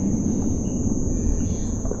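Steady low rumbling noise with a thin, continuous high-pitched tone held over it.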